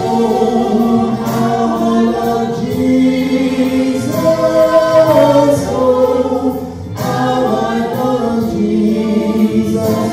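A man and a woman singing a worship song together into microphones, holding long notes, with a short break about seven seconds in.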